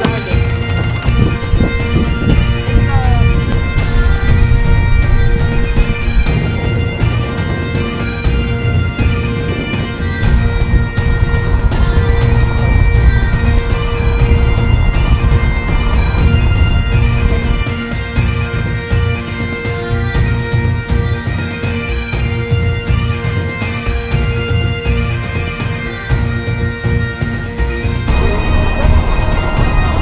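Bagpipe music: steady drones held under a piped melody, with the drones stopping near the end.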